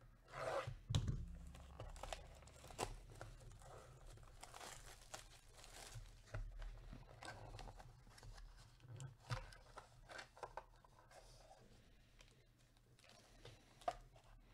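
Hands tearing open a cardboard trading-card box by its pull tab and handling the crinkly black plastic wrapper inside: an irregular run of tearing and rustling, loudest about a second in, with a sharp click near the end.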